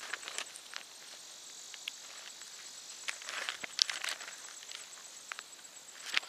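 Bible pages being turned and handled, a run of soft rustles and light clicks that is busiest in the middle. Behind it a faint, steady, evenly pulsing high insect chirp, like crickets, carries on.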